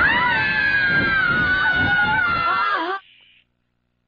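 A long, high-pitched scream from an animated character, held and wavering slightly over a noisy explosion effect, cut off suddenly about three seconds in, followed by near silence.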